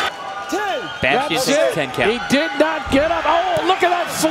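A man's raised voice calling out in quick, arching phrases, with a few sharp knocks mixed in.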